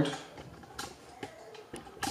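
A few faint, separate clicks and light knocks of plastic parts as the cordless mower's handlebar and safety key are handled.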